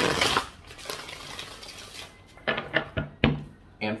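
A deck of tarot cards being shuffled by hand: a loud rush of cards near the start that settles into a softer riffling, then a few short sharp taps about two and a half to three and a half seconds in.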